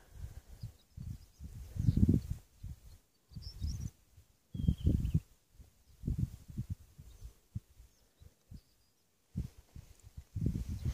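Wind buffeting a phone microphone: irregular low rumbling gusts with short lulls between, loudest about two and five seconds in.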